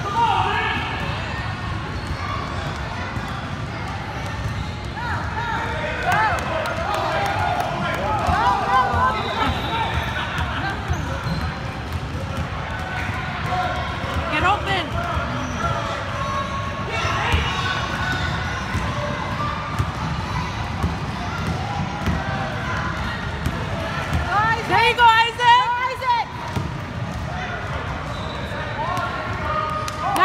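A basketball bouncing on a hardwood gym floor amid children's running feet, in an echoing gym. Voices call out at several moments, most strongly about a third of the way in and again near the end.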